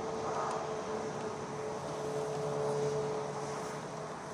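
A distant engine droning steadily, swelling a little and then easing off, over a steady hiss of outdoor noise.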